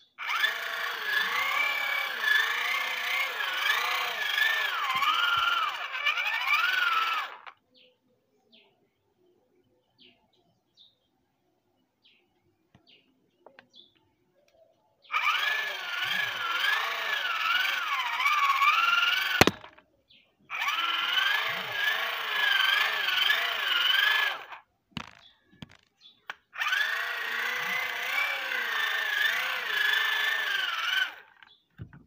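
Hand-cranked geared DC motor, salvaged from a children's ride-on toy and working as a generator, whining through its gear train as it is turned by hand to charge a phone, the pitch wavering up and down with the cranking speed. It runs in four spells with pauses between, and there is one sharp click between the second and third.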